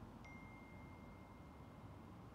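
A single chime strikes about a quarter second in, and one clear high tone rings on and slowly fades. Behind it is a faint steady outdoor rumble.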